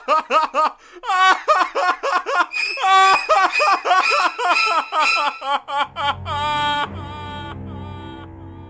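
A rapid, high-pitched giggling laugh from a cartoon voice, growing stronger about a second in. Near the end it stretches into drawn-out notes as a low ominous drone comes in and fades.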